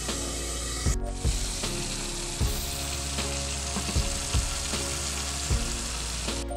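Green beans sizzling in a wok on a gas burner, a steady frying hiss with a few light knocks scattered through it.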